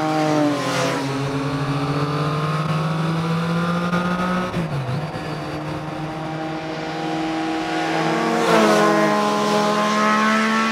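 Motorcycles riding past on a road, their engine note dropping in pitch as the first bike goes by about half a second in and again as a pair goes by near the end.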